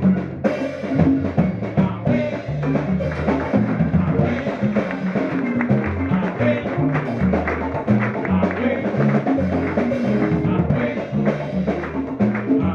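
Live Afro-Cuban jazz band playing: a moving upright-bass line under electric guitar and keyboard, driven by busy hand percussion and timbales.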